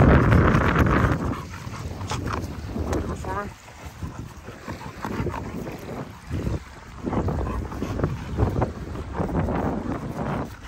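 Wind buffeting the phone's microphone in uneven gusts, heaviest in the first second or so, then gusting on and off at a lower level.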